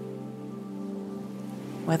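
Soft ambient background music: a sustained drone of several held tones, with a faint even hiss beneath it.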